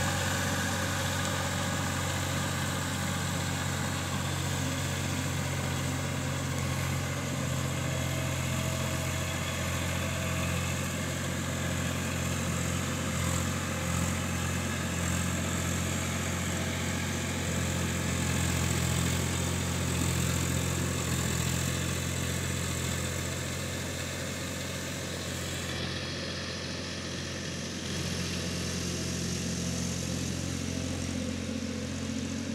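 Massey Ferguson 7250 tractor's three-cylinder diesel engine running steadily while driving a rotavator through flooded paddy mud for puddling. It grows a little fainter near the end as the tractor moves away.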